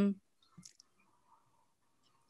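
The tail of a woman's drawn-out spoken 'um', then a pause of near silence over a video call, broken by a couple of faint short clicks about half a second in.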